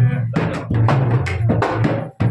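Devotional folk music: a deru drum beaten in a fast, even rhythm, about five strokes a second, over a sustained low tone.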